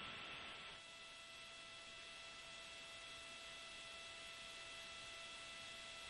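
Near silence: a faint steady hiss with a low electrical hum and a few thin steady tones on the broadcast audio line.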